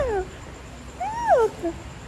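A cat meowing twice: a call trailing off at the start and a second rising-then-falling meow about a second in.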